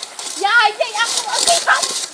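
Children's high-pitched squeals and short cries, the longest and highest about half a second in, over the hiss of splashing shallow river water.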